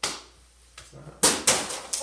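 Plastic water bottles used as bowling pins being struck by a rolled ball: two sharp knocks about a second and a half in, followed by a few smaller clatters as bottles fall.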